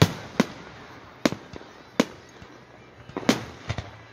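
Fireworks display: aerial shells going off in a string of sharp bangs, about six at uneven intervals, each followed by a short echo.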